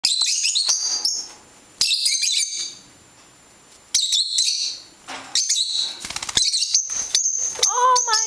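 Young lovebirds chirping in short, high-pitched bursts, with a brief flurry of wing flaps about six seconds in as a fledgling takes off from a hand.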